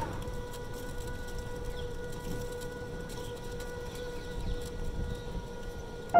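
A steady, held tone with even overtones over a crackling hiss, an old-film sound effect laid under a vintage-style transition.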